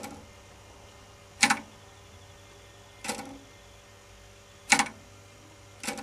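Four short, sharp mechanical clicks about a second and a half apart over a faint steady hum, from the register mechanism of a Landis & Gyr ML1d three-phase kWh meter.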